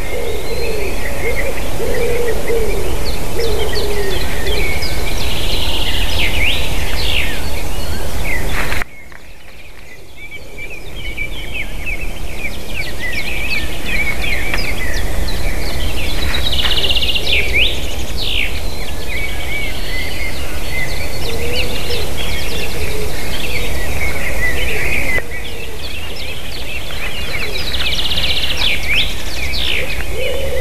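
Several songbirds singing at once, short chirps and trills overlapping throughout, over a steady low rumble. A low cooing call sounds in the first few seconds and again at the end. The whole sound drops abruptly about nine seconds in and slowly builds back.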